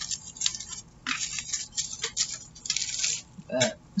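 A brown kraft paper bag rustling and crinkling in irregular clusters as hands fold and press it flat.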